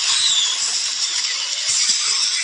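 Film sound effects of a volcanic eruption: a loud, steady, dense rushing noise of fire and falling burning debris, thin in the bass.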